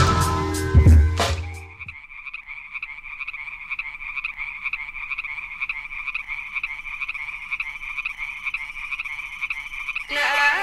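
Electronic intro music ending with a few sharp hits in the first two seconds, then a steady chorus of frogs calling, a fast-pulsing, high-pitched trill.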